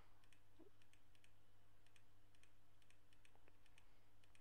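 Faint, scattered clicks of a computer mouse, often in quick pairs, over a steady low electrical hum.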